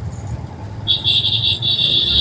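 Motorcycle riding through city traffic: low engine and road rumble, with a high, steady, slightly pulsing tone starting about a second in and lasting to beyond the end.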